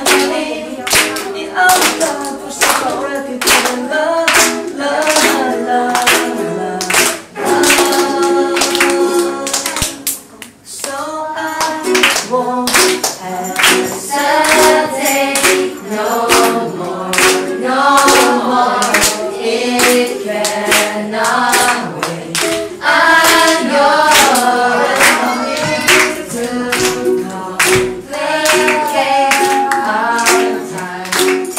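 A group of children and adults singing a song together, clapping along on the beat, to ukulele strumming. The singing breaks off briefly about ten seconds in.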